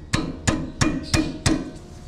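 A socket wrench being worked on a front brake caliper bolt, making five sharp metallic clicks about a third of a second apart.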